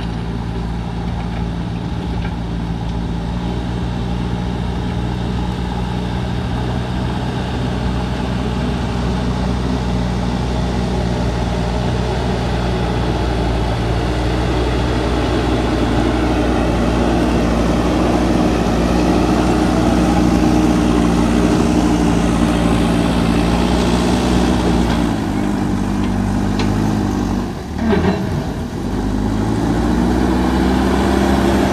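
JCB backhoe loader's diesel engine running under load as the machine pushes soil with its front bucket. The engine note is steady, growing a little louder and higher in pitch through the second half. Near the end it dips sharply and climbs back up.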